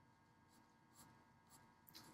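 Near silence: a few faint ticks of an HB graphite pencil touching drawing paper, about a second in and again near the end.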